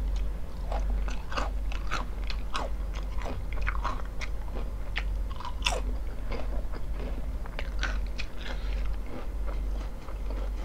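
Close-miked chewing of a mouthful of crunchy potato chips and hot dog: irregular crunches and wet mouth clicks, several a second, over a low steady hum.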